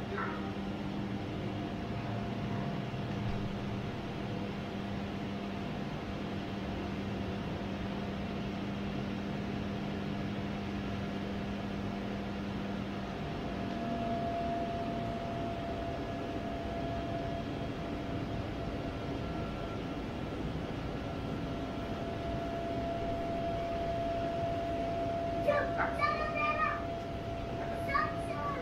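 Electric bounce-house blower running steadily, a continuous hum with rushing air, as it inflates the bounce house; its hum shifts slightly about halfway through. A brief voice calls out near the end, the loudest moment.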